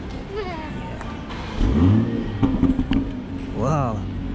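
A 2020 Toyota Supra GR's turbocharged 3.0-litre inline-six being started: it fires about one and a half seconds in with a rising flare, then settles into a steady idle.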